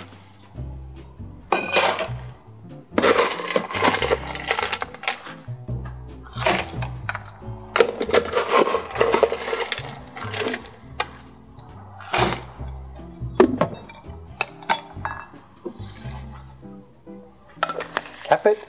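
Ice cubes dropped by the handful into a metal cobbler shaker tin, a run of clinking, clattering impacts spread over several seconds, with background music underneath.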